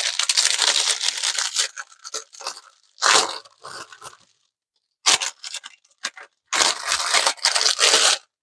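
Clear plastic bag crinkling and rustling as it is handled and unwrapped from a bundle of diamond-painting drill packets, in bursts: a long stretch in the first two seconds, short ones around three and five seconds, and another near the end.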